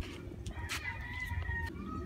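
A rooster crowing faintly, one long held call starting about half a second in.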